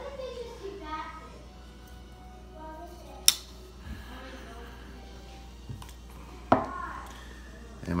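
Two sharp metal clicks about three seconds apart, the second with a brief ring, as an RJ Martin folding knife is handled and set aside.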